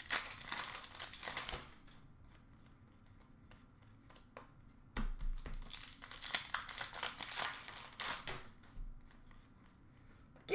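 Upper Deck hockey card pack wrappers crinkling and tearing as packs are ripped open and handled. The sound comes in two spells, one in the first second and a half and a longer one from about five to eight and a half seconds in, with a quiet stretch between.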